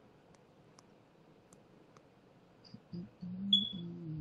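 Quiet video-call audio with a few faint mouse clicks. About three seconds in, a low, muffled, pitched sound comes in along with a short, high beep.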